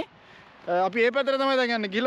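A man speaking, after a pause of under a second.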